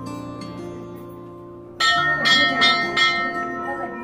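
Background music of sustained held notes. Just under two seconds in, a bell is struck and rings on, slowly fading.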